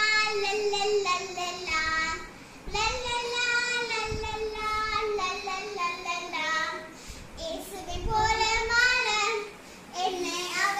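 A young girl singing a song on her own, in three phrases of long held notes separated by short breaks.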